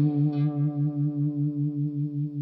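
Electric guitar note left ringing through a Black Cat Vibe, a Univibe-style modulation pedal. The held tone throbs evenly about three times a second as it slowly fades.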